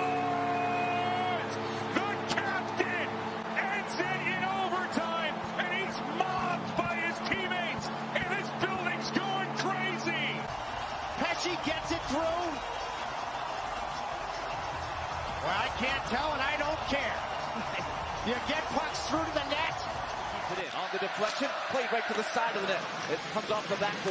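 Arena goal horn sounding a steady multi-tone blast for about ten seconds over a cheering, shouting crowd, signalling a home-team goal. After the horn stops the crowd noise carries on, with scattered knocks.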